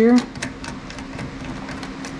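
A steady low hum with a few faint, light clicks as hands turn the black AN hose fittings on a fuel pump hanger plate.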